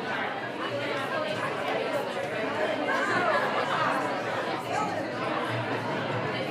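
Background chatter: several people talking at once, the words indistinct, in a large echoing room.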